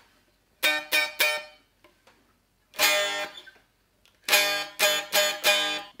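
Gibson SG electric guitar strumming chords played high up the neck: three quick strums, then one ringing chord, then a run of five quick strums near the end. It is an intonation check, and the chords sound in tune all the way up.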